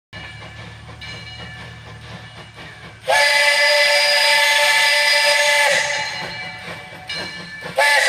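Steam whistle of Lehigh Valley Coal 126, a steam tank locomotive, blowing a long blast of about two and a half seconds: a chord of several steady tones that trails off into hiss. A second blast starts just before the end, and a faint hiss and rumble come before the first.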